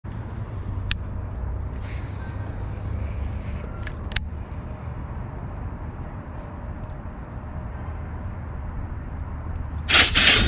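Low, steady outdoor background rumble, with a few sharp clicks in the first half.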